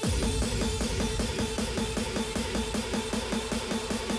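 Hard dance track in its build-up: fast, evenly repeating electronic pulses over steady held synth tones.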